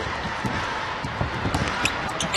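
A basketball being dribbled on a hardwood court, a few low thumps, over the steady background noise of an arena.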